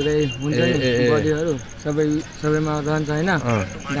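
A person's voice with long, level-pitched syllables, at the same loudness as the talk around it; the speech recogniser picked out no words.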